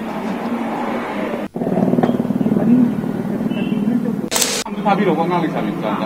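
Voices of people at a gathering over a steady low hum; the sound drops out for an instant about a second and a half in, a short sharp burst of noise comes about four seconds in, and then a man speaks.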